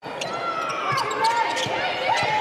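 A basketball being dribbled on a hardwood court, with repeated bounces and voices in the background.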